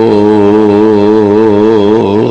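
A man's voice reciting the Quran in a drawn-out melodic style, holding one long note with a steady vibrato, here the closing word of the verse on martyrs being alive with their Lord and provided for.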